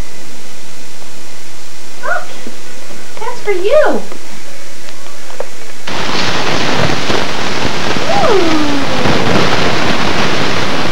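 A baby vocalising: short babbling squeals that rise and fall in pitch. About six seconds in, a loud steady rushing noise starts, and over it the baby gives one long falling call.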